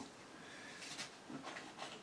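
Quiet room with a few faint, soft handling noises about halfway through and near the end, as items in a hard guitar case are moved.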